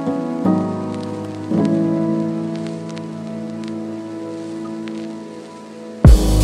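Soft background music of sustained chords that change about half a second and a second and a half in and slowly fade, with faint scattered clicks like a light crackle underneath.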